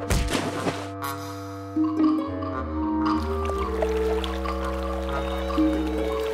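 A cartoon splash sound effect, a burst right at the start with a second, smaller one about a second in, as the beaver goes into the water. Background music follows, with held notes climbing in steps.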